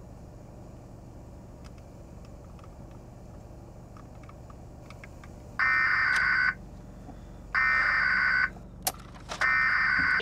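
Three loud, long alarm-like beeps, each about a second, coming about two seconds apart from a little past halfway, over a low steady rumble inside a car.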